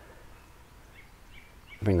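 Quiet outdoor ambience with a few faint, distant bird chirps; a man's voice starts just before the end.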